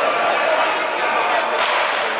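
Indistinct voices carrying through an ice rink, with one sharp crack of a hockey stick striking about one and a half seconds in.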